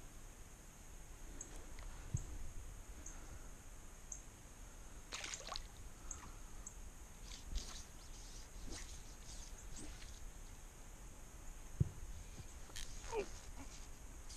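Faint splashes and drips of shallow creek water around a wading angler, a few short splashes scattered through, with a single soft knock about two seconds before the end.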